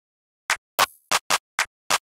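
Clap one-shot samples from a hip-hop drum kit previewed one after another: six short, sharp claps at uneven spacing of about a quarter to a third of a second, starting about half a second in.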